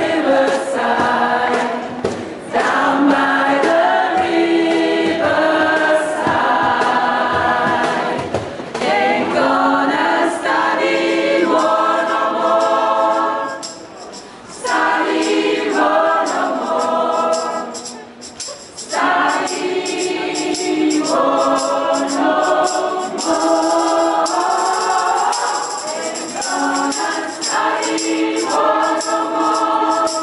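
Mixed amateur choir singing a Christmas song, led by a female soloist on a handheld microphone. It sings in phrases with brief pauses between them.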